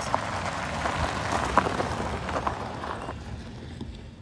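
A Nissan SUV driving past on a gravel road, its tyres crunching over the gravel with a few sharp clicks; the noise peaks about a second in and fades as the car moves away.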